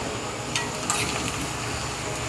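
Sliced shallots sizzling steadily in hot coconut oil in a cast-iron kadai, stirred with a steel spoon that makes a few light scrapes against the pan.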